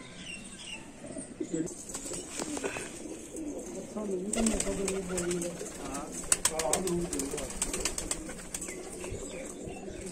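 Domestic pigeons cooing in a loft, low wavering calls repeated through most of the stretch. A run of sharp clicks or wing flaps comes in the middle.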